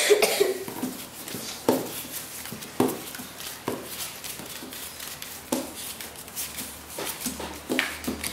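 Paper playing cards laid one by one onto a wooden tabletop as they are counted, a light tap about every second. A cough right at the start.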